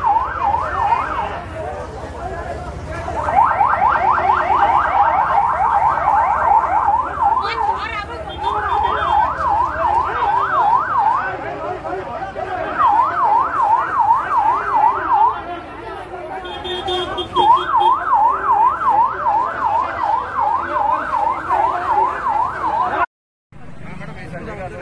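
Police vehicle siren in yelp mode: a fast rising-and-falling wail, about two to three sweeps a second, sounding in several bursts with short breaks, over the noise of a crowd.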